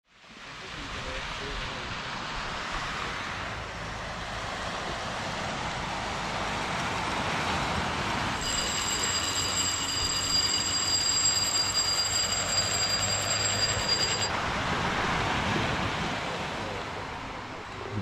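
Steady rushing surf noise that fades in at the start. A steady high-pitched whine joins it about eight and a half seconds in and cuts off suddenly about six seconds later.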